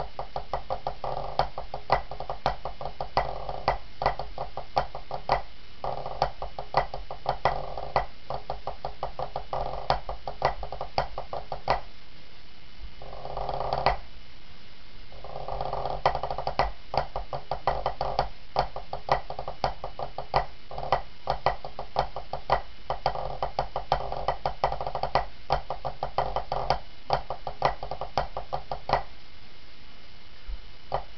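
Pipe band snare drum playing a fast competition drum score: dense rolls and rapid strokes with regular accented hits. Sustained pitched music plays behind it and drops out briefly near the middle.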